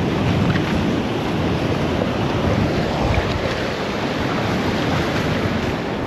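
Surf breaking and washing up over the sand, a steady rush, with wind buffeting the microphone.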